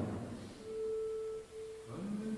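A single steady pure note held for about a second, given as the starting pitch for the chant. Men's voices begin chanting right at the end.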